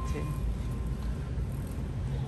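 Steady low background rumble with a faint, thin steady hum above it: store room tone.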